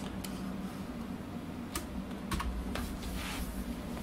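Computer keyboard keys clicking a few scattered times, with a short scratchy rustle about three seconds in.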